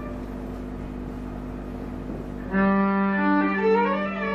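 Solo violin playing live: faint held tones, then about two and a half seconds in a loud sustained low note enters, with a line of higher bowed notes climbing stepwise above it.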